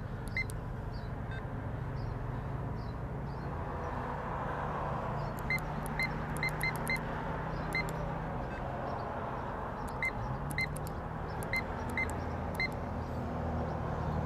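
Fuel-station card terminal keypad beeping once at each key press: about a dozen short high beeps at uneven intervals, most in the middle and latter part. A steady low hum runs underneath.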